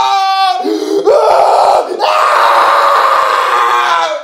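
A man screaming in pain: loud, drawn-out screams, broken by brief gaps about half a second in and again about two seconds in, the last one held about two seconds.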